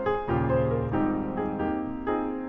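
Solo jazz piano played on a grand piano: chords and melody notes struck in turn, each left to ring into the next.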